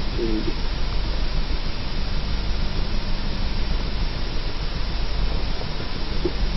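Steady hiss with a low rumble underneath, the noise of an old camcorder recording outdoors, with a brief faint pitched sound right at the start.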